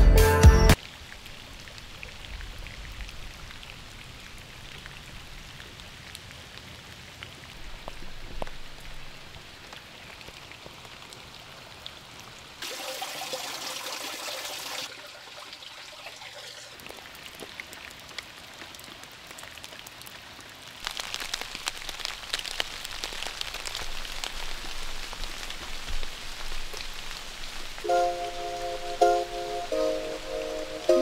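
Rain falling, a soft patter that grows louder and busier with drops about two-thirds of the way through. A music track cuts off in the first second and another begins near the end.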